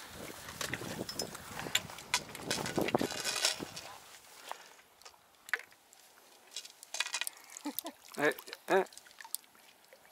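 Hooked carp splashing and thrashing in shallow water as it is drawn into a landing net, a rough sloshing for about the first four seconds. A few short vocal sounds follow near the end.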